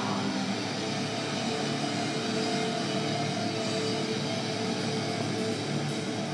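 Heavy metal band playing live, distorted electric guitars holding steady notes over a dense, noisy wash of amplified sound.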